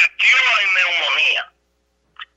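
A man speaking over a telephone line.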